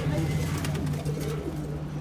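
Domestic pigeons cooing in their cages, over a steady low hum.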